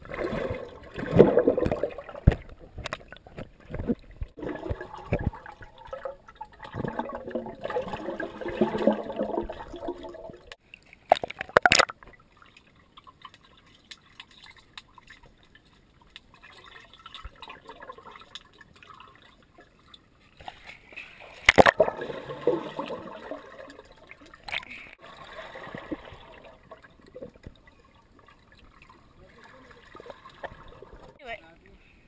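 Swimmers moving through pool water, heard underwater through a camera's waterproof housing: muffled gurgling and splashing that comes and goes, with a couple of sharp knocks.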